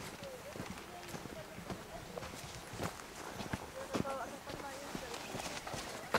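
Footsteps on a dirt trail: irregular scuffs and crunches of several people walking, with faint voices in the background.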